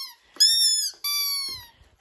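Rubber chicken squeaky toy squeezed twice: two long, high-pitched squawks, the second sliding down in pitch.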